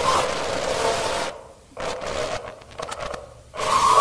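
Steady hiss of static from a television showing snow. It cuts out abruptly twice around the middle, once briefly and once for about a second.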